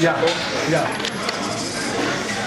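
A run of light clinks over voices chattering in a busy room.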